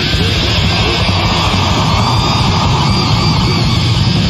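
Death metal played by a full band: heavily distorted electric guitar over bass and drums, a loud, dense wall of sound that runs on without a break.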